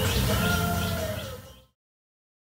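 Birds chirping in a garden over a steady low background hum, cut off abruptly to silence near the end.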